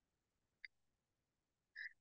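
Near silence: room tone in a pause between speech, with one faint short click about a third of the way in and a small mouth sound just before speaking resumes.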